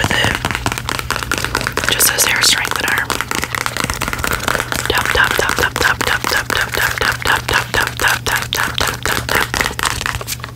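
Long press-on fingernails tapping quickly on a small cardboard product box close to the microphone: a rapid run of sharp taps, settling into about five a second partway through.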